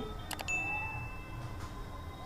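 Animated subscribe-button sound effect: a couple of quick mouse clicks, then a single notification-bell ding, a high chime that fades over about a second and a half.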